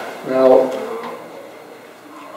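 A man says one word, "Now", in a small room, then pauses with only faint room sound.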